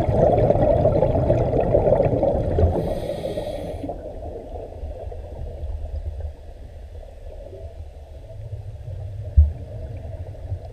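Scuba diver's exhaled bubbles gurgling underwater, muffled as heard through a camera's underwater housing, loudest over the first few seconds and then dying down to a low wash. A brief hiss comes a few seconds in, and a single low thump comes near the end.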